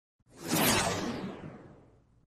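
Whoosh sound effect of a logo intro: it swells in quickly about half a second in, then fades away over about a second and a half, turning duller as it fades.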